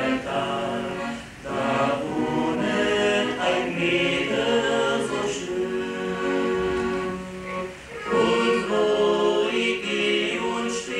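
Male vocal quartet singing in close harmony to a piano accordion, with short breaks between phrases about a second in and near eight seconds.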